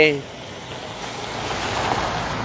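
A road vehicle passing close by: a rush of tyre and engine noise that builds steadily and is loudest near the end.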